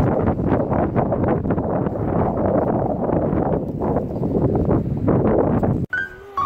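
Strong blizzard wind buffeting the microphone in loud, gusting rumbles, cutting off suddenly near the end.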